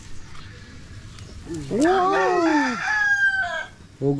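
A rooster crowing once: one long crow that starts about one and a half seconds in and lasts about two seconds, rising and then falling in pitch.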